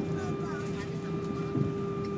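Jet airliner's engines and cabin systems heard from inside the cabin while the plane taxis: a steady hum with one strong held tone over a low rumble, and faint passenger voices. A small bump sounds about one and a half seconds in.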